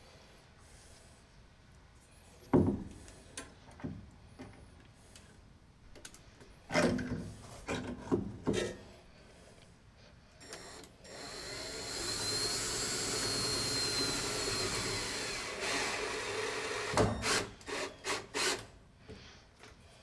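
Power drill driving a screw into a wooden brace for about five seconds, fastening a brass shower valve in place. Knocks and clatter from handling the valve and drill come before and after.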